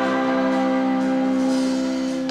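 A woman singing one long, steady held note with a live rock band.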